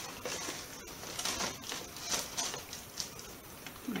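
Paper and cardstock rustling and scraping under hands as a glued paper pocket is pressed down and the album page is lifted, with a few short crinkles.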